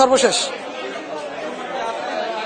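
A man's speech breaking off about half a second in, followed by indistinct chatter of several voices in the background.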